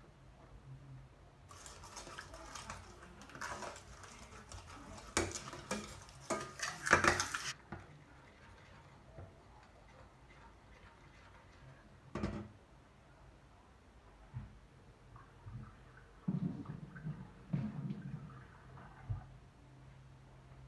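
Utensil clinking and scraping against a pan as a thick red wine gravy is stirred, with a stretch of hissing noise and clicks for about six seconds near the start and a sharp knock about halfway through.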